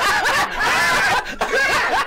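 Two men laughing loudly together, with a couple of brief dips.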